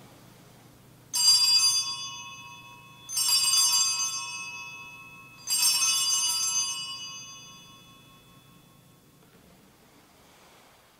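Altar bells rung three times at the elevation of the chalice, marking the consecration. Each ring starts with a brief jingling shake and fades slowly, the last dying away about four seconds later.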